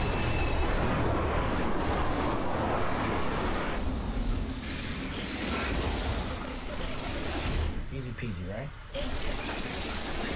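A TV horror scene's sound effects: a loud, steady rushing like a storm wind, with a short dip near the end before it returns.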